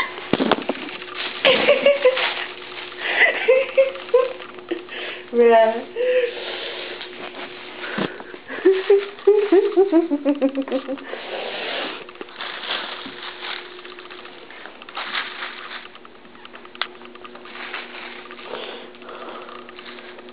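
A woman's laughter and soft vocal sounds in the first half, over a steady faint low hum, with scattered light clicks; the second half is quieter.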